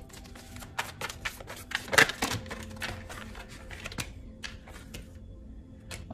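Tarot cards being shuffled and drawn by hand: a run of quick clicks and card flaps, the loudest about two seconds in, thinning out after about four seconds.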